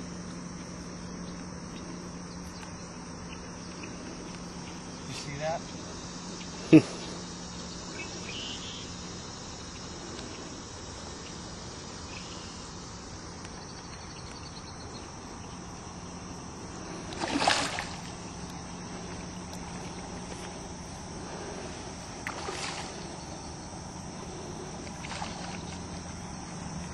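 A steady high-pitched chorus of insects running throughout, over a low steady hum, broken by a sharp click about seven seconds in and a few short louder noises, the loudest about seventeen seconds in.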